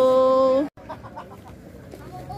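A rooster crowing, its long final note held steady and loud, then cut off abruptly well under a second in; faint background noise follows.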